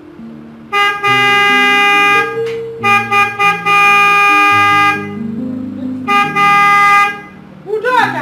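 Car horn honking in three long blasts, with short toots between, over background music.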